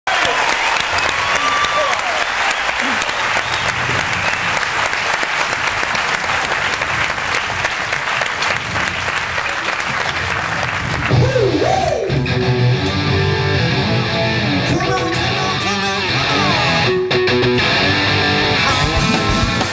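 Audience applauding and cheering for about the first ten seconds, then a rock band starts playing, led by electric guitar with sliding notes over a low bass line.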